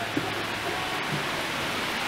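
Heavy rain pouring down in a steady, even hiss.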